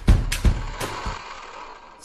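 Last beats of an electronic intro track: two deep drum hits in the first half second and a lighter high hit just under a second in, then the music dies away.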